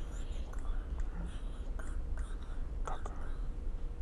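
Quiet whispered speech with a few soft clicks over a low steady hum.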